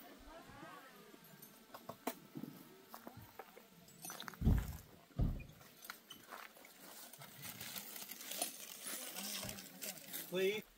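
Quiet outdoor ambience with faint distant voices and scattered small clicks, and two short low thumps about four and a half and five seconds in.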